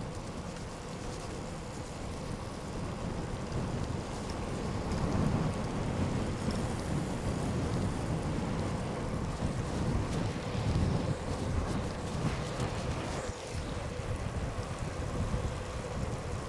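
Wind rushing over an action camera's microphone on a bicycle descent, mixed with tyre noise on wet tarmac, a steady low rumble that swells about five seconds in and again near eleven seconds.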